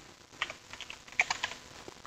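Computer keyboard keystrokes: a few quick scattered key clicks in small clusters.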